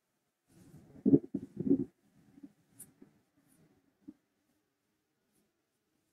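Handling noise: a short cluster of soft knocks and rubbing about a second in, followed by a few light clicks.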